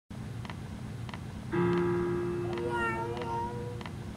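Faint even ticking, about one tick every 0.6 s. About one and a half seconds in, a louder held tone joins it, and near the middle a short wavering, gliding cry passes over the tone.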